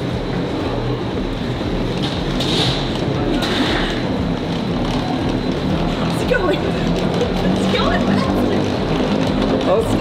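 Steady mechanical running of an airport moving walkway, with background music.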